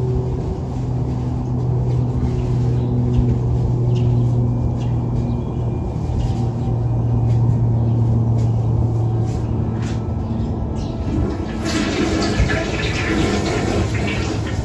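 A steady low machine hum with a rushing noise that swells near the end.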